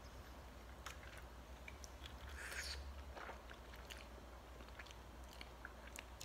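Faint chewing of ramen noodles, with small scattered mouth clicks and a short soft hiss about two and a half seconds in, over a low steady hum.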